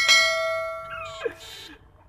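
A single bell-like ding that sounds at once and rings down over about a second and a half. A short falling glide in pitch comes a little after a second in.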